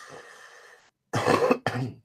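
A person coughing twice, a little over a second in, after a soft breath.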